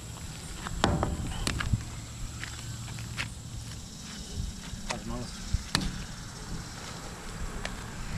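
Faint outdoor background with a steady high-pitched whine, broken by a few sharp clicks and knocks as a magnet-fishing rope and magnet are handled and readied for a throw.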